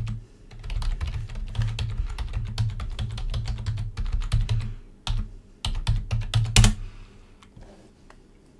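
Typing on a computer keyboard: quick runs of key clicks with a short pause about five and a half seconds in, and one louder knock shortly after.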